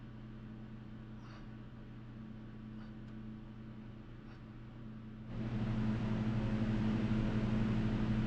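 Steady electric hum of a studio heater running, with a few faint ticks. About five seconds in, the sound jumps louder and a fan-like rushing noise joins the hum.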